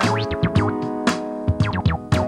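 Live funk band playing an instrumental passage: electric guitar, keyboards and bass over a steady drum beat played back from a boombox cassette, with some sliding notes.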